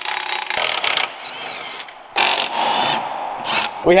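A power tool running in bursts: about a second at the start, again for most of a second past the halfway point, and briefly near the end.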